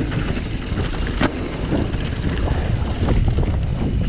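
Wind buffeting the microphone and tyres rolling on a dirt trail as a mountain bike rides downhill at speed, with a couple of sharp knocks near the start and about a second in.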